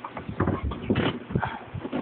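Handling noise from a hand-held camera being moved around: a quick irregular run of knocks, thumps and rubbing on the microphone.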